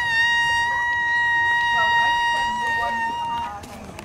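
A green leaf blown as a whistle against the lips, sounding one long, steady, high note. The note settles into pitch at the start and stops about three and a half seconds in.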